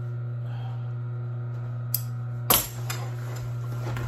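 An industrial sewing machine's motor hums steadily while the machine sits idle. There is a sharp click about two seconds in and a louder clack about half a second later, the sound of the work being handled at the machine.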